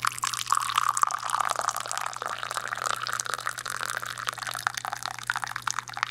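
Tea poured in a thin stream into a small ceramic cup, splashing and bubbling steadily as the cup fills.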